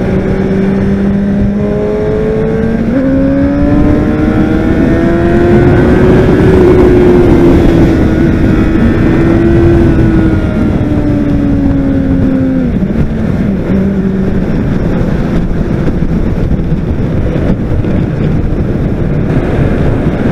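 Honda CBR600RR inline-four engine running under way on the road. Its note steps up a few seconds in, climbs gently, then falls back about twelve seconds in and settles to a steady cruise. A constant rush of wind noise runs over the microphone beneath it.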